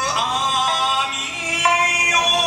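A man singing an Okinawan folk song to his own sanshin, the three-stringed Okinawan lute, with long held notes that slide and bend in pitch.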